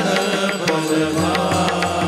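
A Varkari bhajan group of men singing an abhang together in a devotional chant. Brass taal hand cymbals strike in a steady rhythm beneath the voices.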